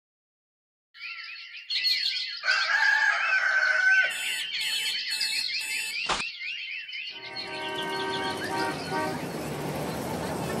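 Morning birdsong with chirps repeating, then an alarm clock beeping in four short bursts, cut off by a sharp click as it is switched off. From about seven seconds in, city traffic noise with car horns comes in.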